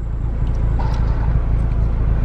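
Car engine idling, a steady low hum heard inside the cabin.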